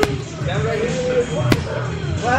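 Boxing-gloved punches landing on a heavy punching bag: two sharp hits about a second and a half apart, over background music with a singing voice.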